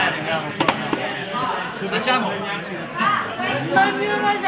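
People's voices talking, indistinct, with two sharp knocks a little over half a second in.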